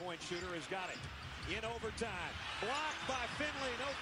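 Televised basketball game audio heard faintly: a play-by-play commentator's voice over arena crowd noise, with a basketball being dribbled on the court.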